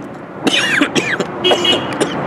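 A man coughing: a rough cough about half a second in and another near the end.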